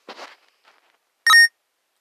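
A single short, loud electronic beep about a second and a quarter in, preceded by a brief faint hiss.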